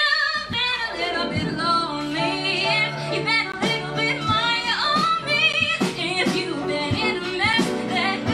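A woman singing a musical-theatre song live, her held notes wavering with vibrato, accompanied by a small band.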